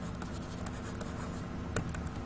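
A pen writing a few words of handwriting: faint scratching strokes with a few light taps, the clearest tap near the end.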